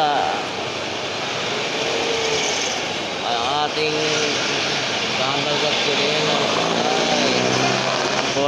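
City street traffic going by: motorcycles and a box truck passing close, under people's voices talking.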